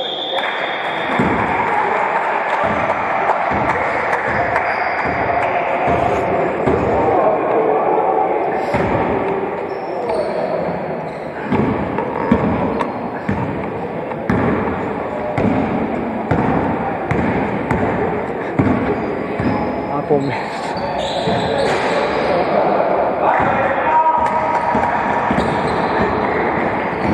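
A basketball being dribbled on a wooden gym floor, repeated bounces through the whole stretch, with players' voices and movement around it.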